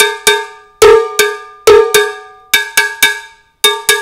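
Large cowbell (mambo bell) struck with the tip of a drumstick: about ten short metallic strokes, mostly in pairs, each ringing out briefly.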